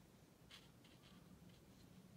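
Very faint, near-silent scratching of a fine paintbrush on paper: a few short, soft strokes as paint is dabbed on.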